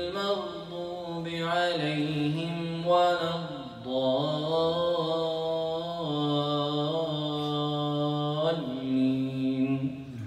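A solo male Qari reciting the Qur'an into a microphone in a melodic Pakistani style, with long held notes that bend and glide in pitch, in several phrases broken by short breaths.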